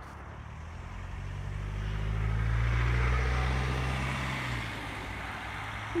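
A car driving past on a wet lane: its engine and tyre noise on wet tarmac swell to a peak about three seconds in, then fade as it drives away.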